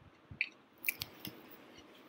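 A few faint, sharp clicks of a computer mouse, four of them within about a second and a half.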